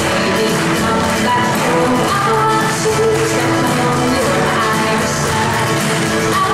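Live Irish folk song: acoustic guitar strumming and bodhrán keeping a steady rhythm under a woman's singing voice.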